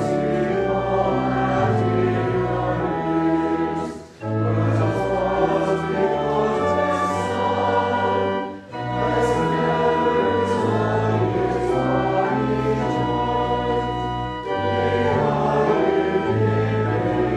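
Choir singing with organ accompaniment in sustained chords, with brief breaks between phrases about four and eight and a half seconds in.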